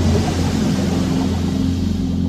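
Sound effect for an animated logo sting: a steady deep drone with a few held low tones and a shimmering hiss over it, leading into ambient music.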